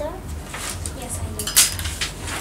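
Stiff picture cards being handled and shuffled on a desk, with scattered clicks and a sharp clack about one and a half seconds in.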